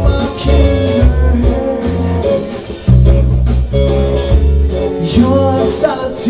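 Live rock band playing a song on electric and acoustic guitars, bass guitar and drums, with a heavy bass line under the guitars. The band gets louder about three seconds in.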